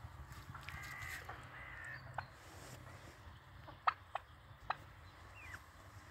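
Faint calls from a mixed flock of hens, turkeys and guineafowl: a brief pitched call about a second in, then a handful of sharp, single pip-like calls spaced irregularly through the rest.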